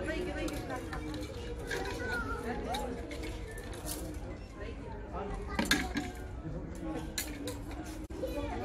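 Clothes hangers clicking and scraping along a shop rail as garments are pushed aside and pulled off, with a sharper clack a little over halfway through, over faint background voices.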